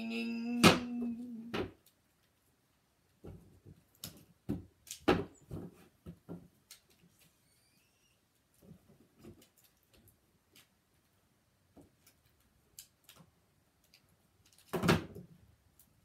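A man's voice holding a droning "ng" sound for the first couple of seconds, then light plastic knocks and clatters of action figures striking a toy wrestling ring: a quick run of knocks, scattered taps, and one louder knock near the end.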